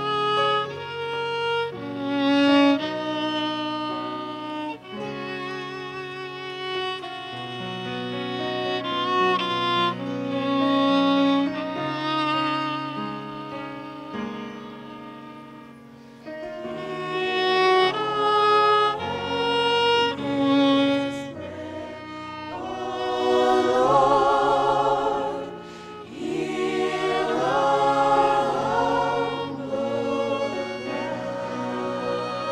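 Solo violin playing a slow melody with vibrato over a low sustained accompaniment. Near the end, several women's voices join in singing.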